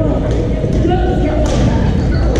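Badminton rackets striking a shuttlecock with sharp cracks, the clearest about a second and a half in, over steady chatter of voices in a large hall.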